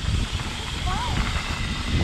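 Wind buffeting the camera microphone and mountain bike tyres rolling over a dirt trail, a steady rumbling rush, with a brief faint vocal sound about a second in.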